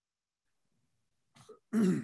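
A person clearing their throat near the end: a short faint sound, then one louder clearing.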